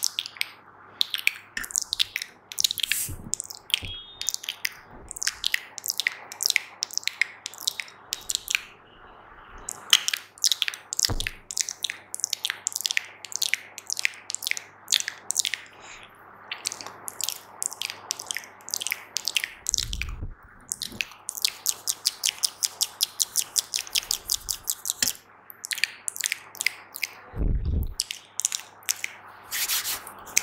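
Fast, wet mouth sounds close to a microphone: a rapid run of clicks and pops, several a second, getting quicker and denser in the second half. Two low thumps stand out, one about two-thirds of the way in and one near the end.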